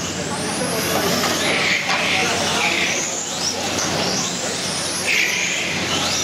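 Several 1/12-scale electric radio-controlled racing cars' motors whining, the pitch sweeping up and down over and over as they accelerate and brake, over a steady hiss.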